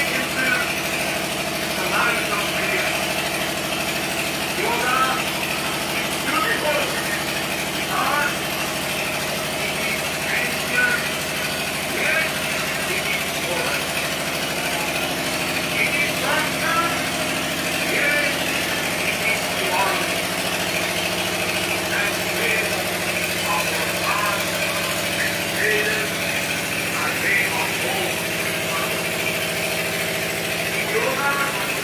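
A steady, unchanging mechanical hum, engine-like, with scattered distant voices over it.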